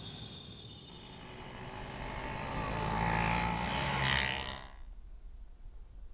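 A rushing swell of noise, like a vehicle going by, builds over a few seconds and cuts off suddenly about five seconds in. Crickets then chirp steadily and quietly in a fast, even rhythm.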